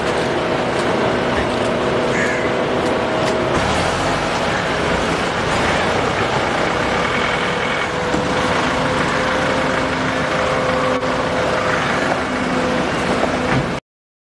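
Steady, loud outdoor crowd noise around a car, with the car's engine running as it moves off. The sound cuts off abruptly near the end.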